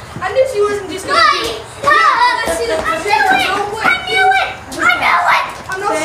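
Children's voices, talking and calling out.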